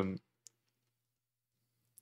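The end of a man's sentence, then near silence with a faint low hum, broken by a single short click about half a second in and another just as he starts speaking again.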